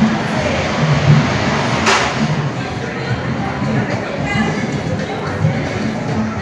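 Amusement arcade din: a steady mix of game-machine sounds and background voices echoing in a large hall, with one sharp knock about two seconds in.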